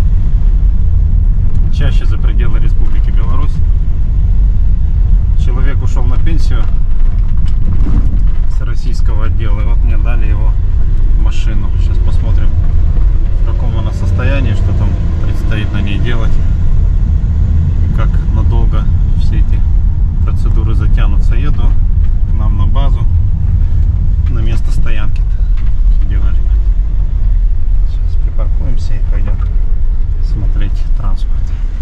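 Low, steady road and engine rumble heard inside a moving car's cabin as it drives over rough, patched asphalt, with scattered short knocks.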